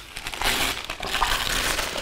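Gift wrapping paper crinkling and rustling in irregular bursts as a wrapped present is handled and unwrapped.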